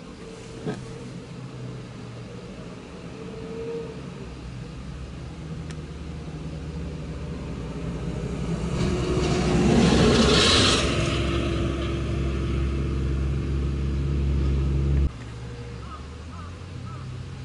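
Vehicles driving past on a road. A car's engine and tyres build to a loud pass about ten seconds in. A steady low engine drone follows and cuts off suddenly near the end.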